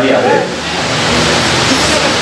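A steady rushing hiss fills the pause, after a man's voice trails off in the first half-second.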